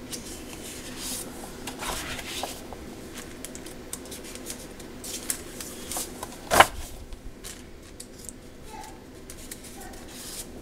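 Large sheets of scrapbook paper being turned by hand, with crisp rustling and crinkling of the clear plastic wrapping. One sharp snap, the loudest sound, comes about two-thirds of the way through as a sheet is flipped over.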